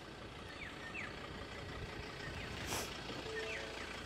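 Faint outdoor background with a few short, falling chirps. A brief rustle comes just under three seconds in, and a steady electronic tone starts just after it.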